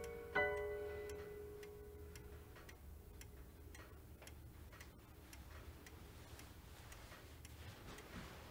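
A single chime strike about half a second in, its tone ringing down over a couple of seconds, followed by a clock ticking faintly and steadily.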